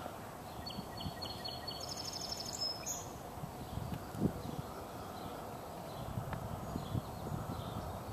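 Quiet outdoor suburban ambience: a steady low background with a bird chirping and trilling in the first three seconds and fainter chirps later, and a few soft low thumps, the loudest about four seconds in.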